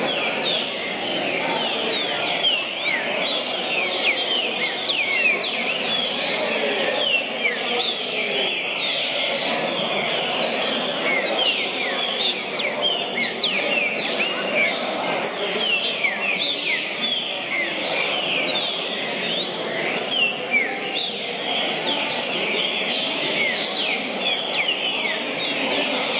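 Many caged green-winged saltators (trinca-ferro) singing at once in a contest hall, quick whistled phrases overlapping densely without a break, over a murmur of crowd voices.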